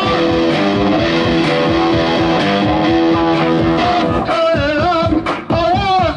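Live rock band playing: electric guitars, bass and drums in an instrumental stretch of held guitar chords, with a singing voice coming back in about four seconds in.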